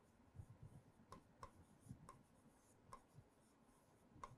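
Near silence with faint, irregular ticks and soft taps of a stylus writing on a pen tablet.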